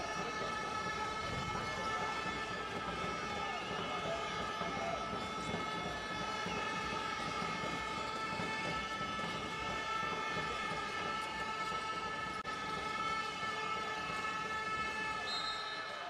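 Basketball arena ambience: a steady drone of several held tones over a low, even crowd hum, with no change or sudden sounds.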